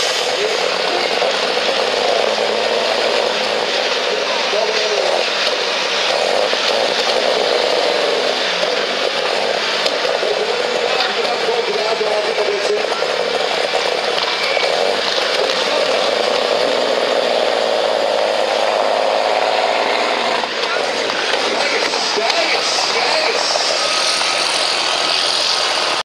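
Superstock pulling tractor's engine running steadily at the start line, hooked to the weight sled, with a voice heard over it.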